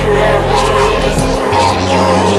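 Drum and bass music from a DJ mix, dense and loud, with a heavy bass line and gritty synth sounds.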